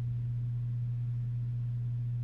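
Steady low-pitched electrical hum: a single unchanging low tone, typical of mains hum in an audio feed.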